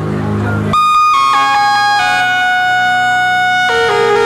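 Live electronic music played on synthesizers. A low droning bass cuts off abruptly about a second in, and a bright sustained synth line takes over, moving through long held notes that step up and down.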